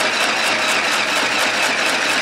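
Dressmaker 2 mini sewing machine stitching steadily, its small motor and needle running with a fast, even beat. It is noisy for its size and lumpy.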